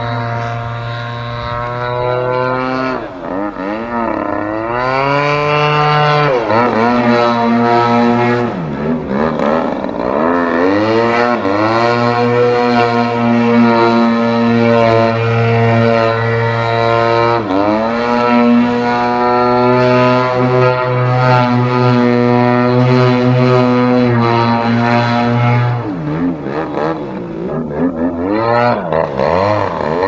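Extreme Flight 85-inch Extra 300 EXP radio-controlled aerobatic plane's engine and propeller running in flight. The note holds steady for long stretches and dips and climbs in pitch several times through the manoeuvres.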